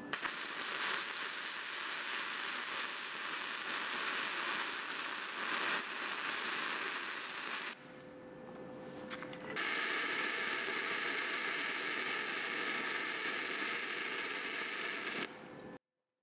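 Gasless flux-cored MIG welding with 0.9 mm wire on a steel pipe, the arc crackling steadily. It runs for nearly eight seconds, stops for about two, then runs again for about six seconds before cutting off.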